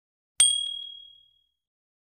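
A single bright ding sound effect, struck about half a second in and fading away over about a second, the kind of effect that marks a tap in a subscribe-button and notification-bell animation.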